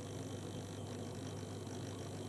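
Quiet room tone: a steady low electrical hum with faint hiss, and no distinct events.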